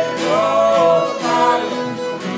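Acoustic guitars strummed together with voices singing a gospel song.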